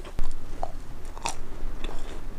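A person chewing a crisp macaron close to a clip-on microphone: mouth sounds with small crunches, a sharp click just after the start and a louder crunch a little past halfway.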